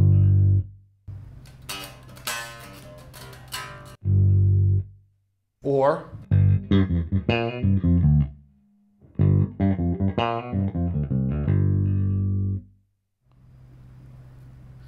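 Fender Boxer Series Precision Bass played through an amp, notes and short phrases ringing low. Several times the sound stops dead: a volume knob dropped to zero cuts the whole signal.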